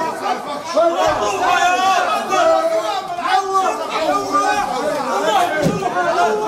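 Many men talking over one another in Arabic, a loud jumble of overlapping voices in a crowded room.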